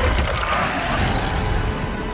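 Film action-scene soundtrack: a dense, loud low rumble of sound effects with music underneath.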